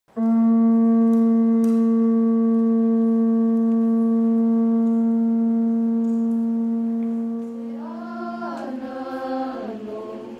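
Pū (Hawaiian conch-shell trumpet) blown in one long, steady note that fades out after about seven seconds. A voice starts chanting near the end.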